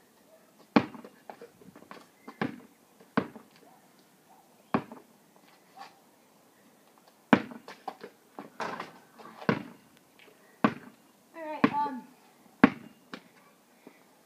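A basketball bouncing, about ten sharp, separate bounces at uneven intervals. A short burst of voice comes about three-quarters of the way through.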